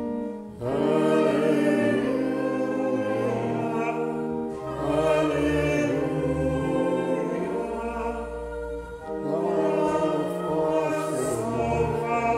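A choir singing a hymn with sustained chordal accompaniment and held bass notes, in phrases separated by brief pauses.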